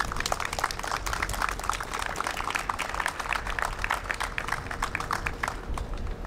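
A small audience applauding, the dense clapping dying away about half a second before the end.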